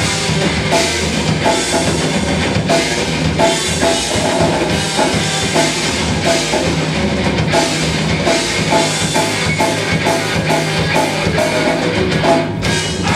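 Extreme metal band playing live: electric guitar, bass guitar and drum kit in an instrumental passage with a fast, steady drum beat.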